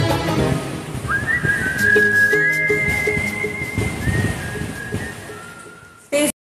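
Whistled melody in long, high held notes that slide up into pitch, over the song's instrumental backing track; the whole fades out toward the end.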